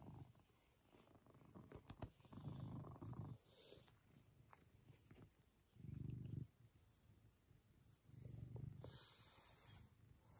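Maine Coon cat purring faintly, close up, in low rumbling stretches of about a second each, with short pauses between them. There is a brief rustle of fur near the end.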